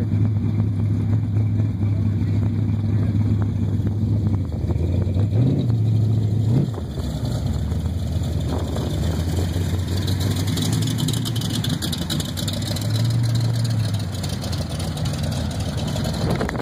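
Deep, loud V8 engines of a modified Camaro and a hot rod coupe running at a lumpy idle as they roll slowly, with a short rev about six seconds in and another swell near thirteen seconds.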